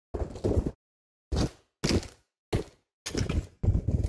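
Footsteps crunching on loose gravel, about six steps in short separate bursts.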